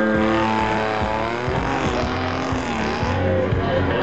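Car engine running as the car drives close past on a dirt track, its pitch dipping and rising a couple of times as the throttle is worked.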